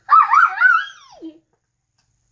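A young girl's high-pitched laugh, wavering up and down for about a second and then falling away.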